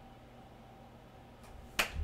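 Quiet room tone, then a single sharp click near the end.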